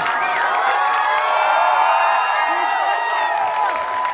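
A crowd of high school graduates cheering, with many high voices overlapping in long held calls. It is loudest around the middle and eases off near the end.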